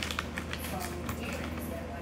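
A sheet of paper rustling and crackling as it is creased into another fold, with a few short crackles near the start, over a low steady hum.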